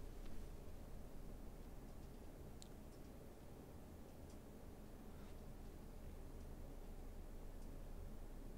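Near silence: faint room tone with a low hum and a few faint, scattered clicks.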